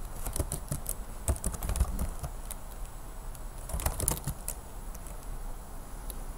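Keystrokes on a computer keyboard, typed in short irregular runs, busiest in the first two seconds and again about four seconds in.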